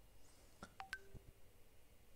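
Near silence: room tone, with a few faint clicks and short beeps at different pitches around the middle.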